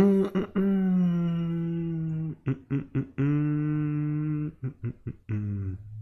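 A man humming a short wordless tune: two long held notes with a few short notes around them, the phrase stepping down in pitch to a lower closing note.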